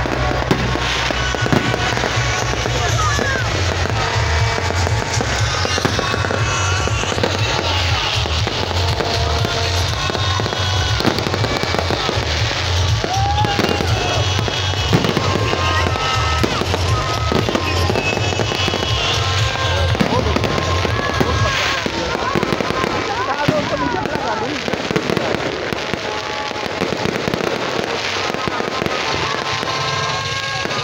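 Aerial fireworks going off overhead in a run of bangs and crackles, over voices from the crowd. Loud music with a pulsing bass plays underneath and its bass cuts out about two-thirds of the way through.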